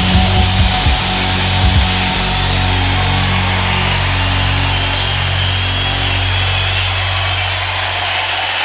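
Live band ending a song: sharp drum hits for about the first two seconds, then a low held chord ringing on, over the steady noise of a large cheering crowd.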